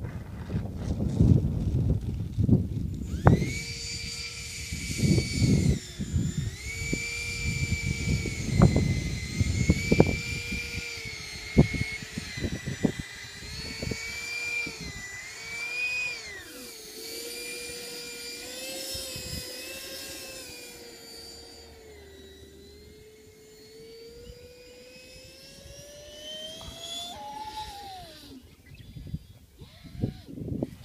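Electric ducted-fan motor of an E-flite FJ-2 Fury RC jet whining on the ground, its pitch rising and falling with the throttle; near the end it climbs once more and then dies away. Low gusty rumble of wind on the microphone through the first dozen seconds.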